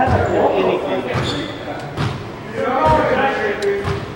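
Indistinct talking, with a few short dull thuds scattered through it.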